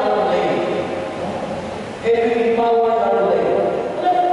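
Voices singing through a microphone and loudspeakers, with long held notes and a short break about halfway through.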